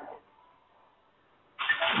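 Near silence on a phone line between two speakers. A voice comes back in near the end.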